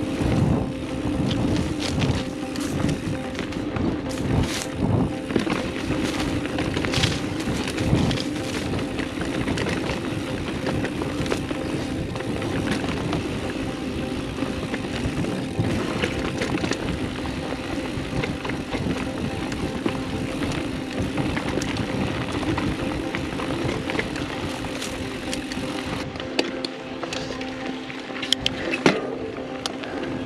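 A mountain bike running fast down dirt singletrack: tyres rumbling on the trail, irregular knocks and rattles over roots and rocks, and wind on the microphone, with a steady held tone running under it throughout.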